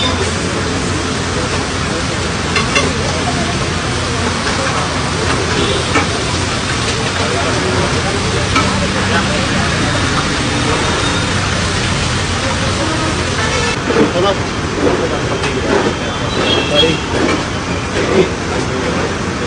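Water sizzling on a hot flat-top dosa griddle as it is splashed on and spread, a steady hiss with steam, with a few sharp clicks of the metal pot and utensil.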